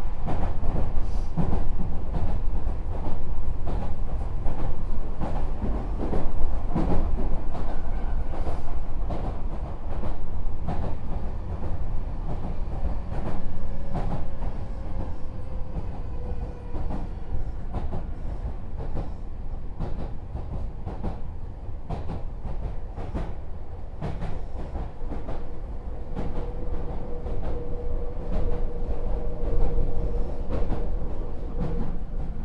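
Meitetsu 4000 series electric commuter train running between stations, heard from inside the car. A continuous rumble of wheels on rail is broken by irregular clacks over rail joints, and a faint steady tone grows in near the end.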